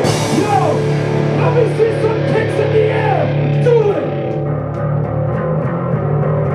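Live metallic hardcore band playing loud, with distorted electric guitar over bass and drums. Several sliding notes fall in pitch during the first four seconds, then the sound thins out, leaving sustained guitar and bass with light ticks.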